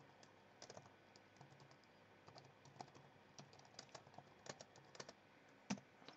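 Faint keystrokes on a computer keyboard: an irregular run of soft clicks as a line of text is typed.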